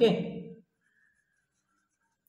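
A man's voice trails off in the first half second, then near silence broken only by the faint scratch of a pen writing on paper.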